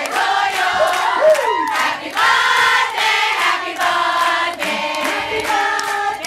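A group of people singing a birthday song together.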